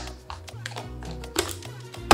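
Background music with a steady bass line, over a few light taps of a plastic deli cup being handled on a wooden cutting board.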